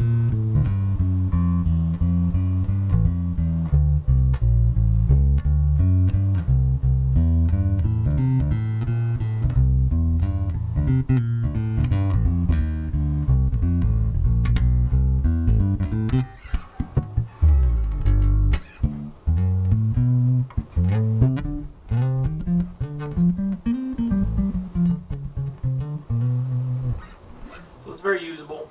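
Zon VB4 four-string electric bass played fingerstyle through its neck pickup, with a mellow, round tone. It plays a run of connected notes for about the first sixteen seconds, then shorter, separated notes with small gaps.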